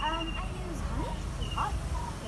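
A dog yelping once at the start, a short cry falling in pitch, over steady low background noise.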